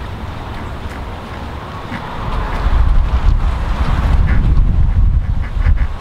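Wind buffeting a handheld camera's microphone, a ragged low rumble that grows louder about two and a half seconds in.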